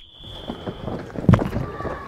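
The fading tail of a coach's whistle blast, followed by outdoor training-pitch noise with one sharp knock about a second and a half in.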